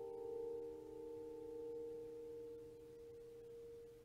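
The last chord of plucked bandura music ringing on as a few held tones, slowly dying away with no new notes struck.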